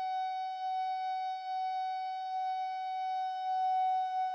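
A single musical note held steady and unchanging in pitch, with a clear stack of overtones.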